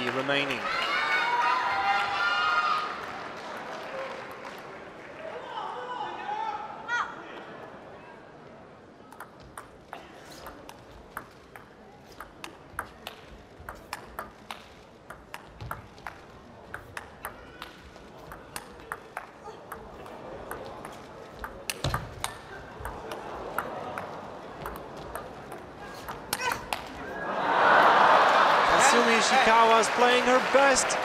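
Table tennis rally: the celluloid ball clicking sharply off the bats and the table in a long exchange of about fifteen seconds. Spectators' voices call out at the start, and near the end the crowd bursts into loud cheering and applause as the point is won.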